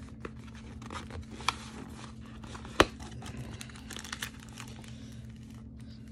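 A cardboard Magic: The Gathering Zendikar Rising Collector Booster box being opened by hand, with foil booster packs crinkling as they are pulled out. Scattered rustles and small clicks, with one sharp click about three seconds in.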